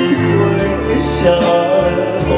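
A man singing a slow song into a handheld microphone, with a live ensemble of strings and other instruments accompanying him.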